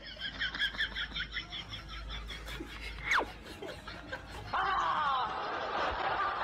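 A woman laughing in quick, high-pitched bursts, with one fast falling whistle-like glide about three seconds in and louder laughter from about four and a half seconds.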